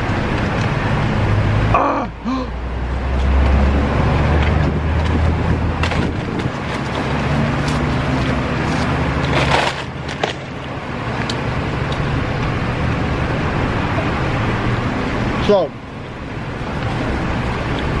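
A person eating cheese fries close to the microphone, with chewing and food handling, over a steady rumble of road traffic. The rumble swells for a few seconds near the start, as if a vehicle passes.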